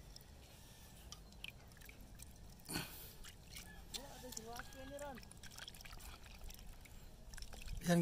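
Faint trickling and small splashes of shallow seawater around a pile of sea cucumbers being rinsed, with one brief louder splash or rustle about three seconds in. A faint voice is heard briefly around the middle.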